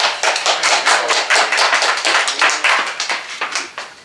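A small audience's hand clapping right after an acoustic country song ends. The claps are distinct and rapid, thinning out and fading near the end.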